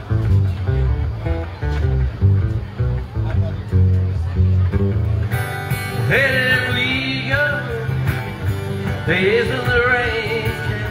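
Acoustic guitar strummed in a steady rhythm as a song's intro, with a man's singing voice coming in about six seconds in and again near the end.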